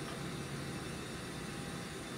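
Steady room noise: an even hiss with no distinct events.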